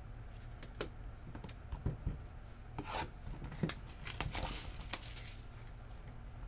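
A trading-card hobby box being torn open by hand: a few light clicks and taps of cards and cardboard being handled, then ripping cardboard and paper in bursts around the middle, the longest near the end.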